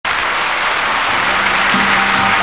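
Studio audience applause, a dense steady wash, with band music coming in about a second in as held low notes.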